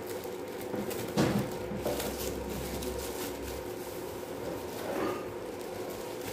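Plastic bag of cornmeal handled and poured into a steel bowl of flour: soft rustles and a few light knocks, over a steady low hum.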